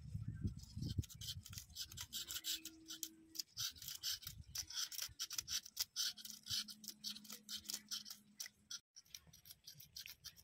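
Scales being scraped off small fresh fish: quick, repeated scraping strokes, with a few low thuds of handling in the first second.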